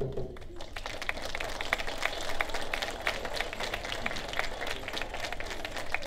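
Audience applauding at the end of a song, with many separate claps that can be picked out individually.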